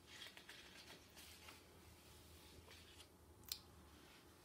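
Faint rustle of a picture book's paper page being turned by hand, with a light tap near the end.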